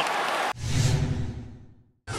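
Arena crowd noise cut off about half a second in by a whooshing broadcast transition effect with a deep rumble, which fades out over about a second and a half.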